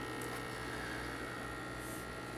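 Steady electrical hum with a soft even hiss from the running nano reef aquarium's pump and water circulation.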